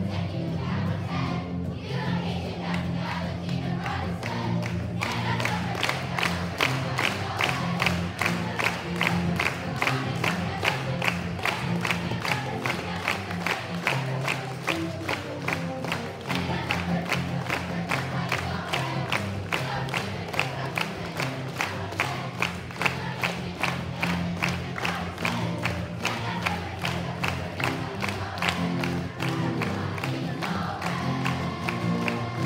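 Children's choir singing with guitar accompaniment; from about five seconds in, hands clap in time to the song, about two to three claps a second, until near the end.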